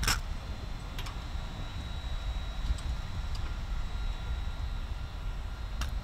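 Low wind rumble on the microphone, broken by a sharp slap right at the start and a fainter one about a second later, with a few faint ticks after: drill rifles being handled by hand during silent drill.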